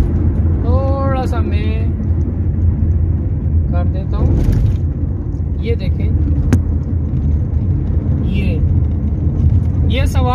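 Steady low rumble of engine and tyre noise inside a car's cabin at motorway speed, with one short click about six and a half seconds in.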